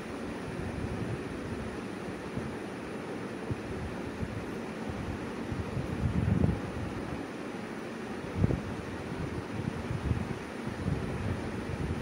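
A spoon stirring and scraping chopped vegetable pieces around an aluminium pot over a steady hiss, with a couple of louder knocks about six and eight and a half seconds in.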